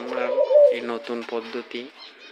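Domestic doves cooing, with a man talking over them.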